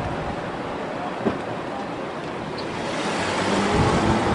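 Car driving off in street noise, a steady rumble and hiss with wind on the microphone, growing louder near the end as the car moves past. A single sharp click a little over a second in.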